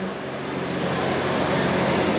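Steady, even rush of city road traffic, with no distinct passing vehicle or strike standing out.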